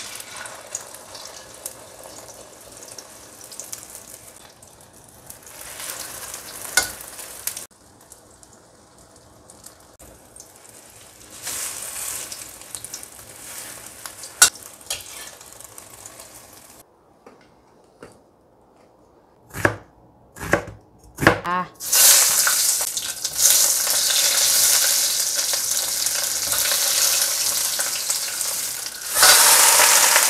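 Beaten egg frying in oil in a stainless steel wok, with a metal spatula scraping and tapping the pan now and then. About twenty seconds in come a few short knocks, then a loud, steady sizzle as leafy greens go into the hot wok.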